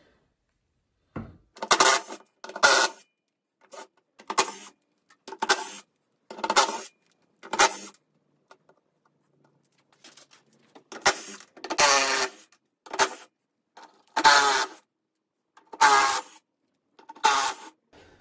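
Compact cordless power driver spinning out the 7/16 bolts around a steel fuel tank's sending-unit flange in about a dozen short whirring bursts, one bolt at a time, with a pause partway through.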